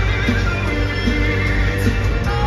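Live rock band playing in an arena, heard from the seats: a steady drum beat about every 0.8 s under held instrument notes and a heavy bass.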